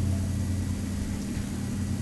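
A steady low hum in a pause between speech, the constant background drone of the recording.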